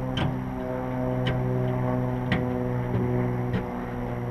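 A steady low droning hum with several overtones, crossed by a sharp click about once a second, four in all.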